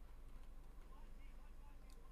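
Near silence: a steady low electrical hum with faint, indistinct voice fragments and a faint click near the end.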